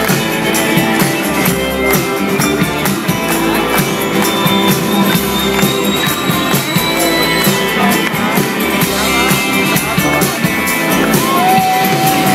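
Live band playing loudly on stage, heard from within the audience: drums keeping a steady beat under bass, electric guitar and keyboards. A thin high tone is held for about three seconds in the middle.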